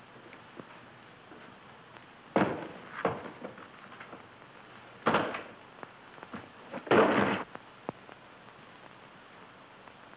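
A suitcase being opened: a few sudden thuds and clicks from its latches and lid, the loudest about seven seconds in.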